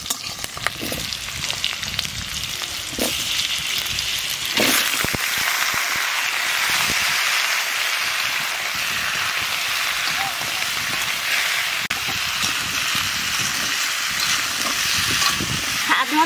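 Pumpkin chunks frying in hot oil in a metal karai, stirred with a spatula: a steady sizzle that grows louder about three seconds in, with a few scrapes and clicks.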